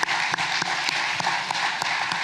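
Congregation applauding: many hands clapping steadily at once.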